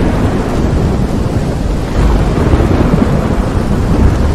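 Thunderstorm sound effect: a continuous rumble of thunder over steady rain.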